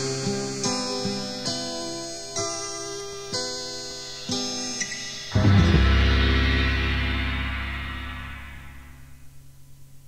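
Closing bars of a song on a cassette demo tape: guitar chords picked about once a second, then a louder, lower final chord about five seconds in that rings out and fades away, leaving a faint tape hum.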